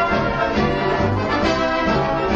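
Orchestral soundtrack music with brass, playing at a steady level with a moving bass line.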